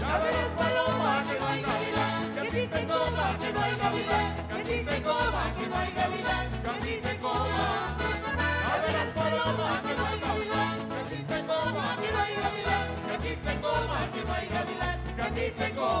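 Live Chilean folk music for cueca dancing: a band of strummed acoustic guitars with voices singing over a steady beat.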